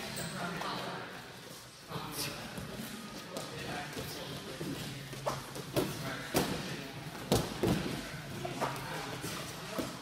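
Wrestlers' feet stepping and shuffling on a wrestling mat, with scattered thuds and slaps of bodies and hands, several of them in quick succession about five to seven and a half seconds in.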